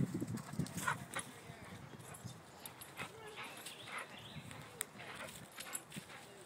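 A dog and a possum facing off: scattered sharp clicks and knocks, with a few brief, faint vocal sounds about three to four seconds in.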